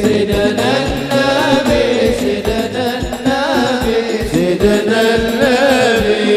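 Sholawat, an Islamic devotional song, sung by a male lead singer through a microphone with a wavering, ornamented melody, over a steady beat of hadroh frame drums.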